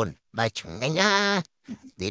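A man's voice: a short syllable, then one long drawn-out vocal sound that rises and falls in pitch.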